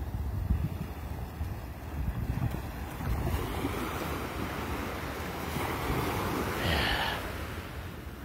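Wind buffeting the microphone with a steady low rumble, over small surf breaking and washing up the sand; the wash swells about two-thirds of the way through.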